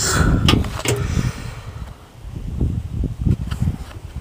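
Wind rumbling unevenly on a handheld camera's microphone, with handling noise and a few light knocks near the start as the camera is moved.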